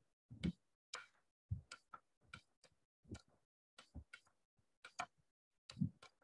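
Computer mouse clicks, irregular, about one or two a second, some with a dull low knock under them.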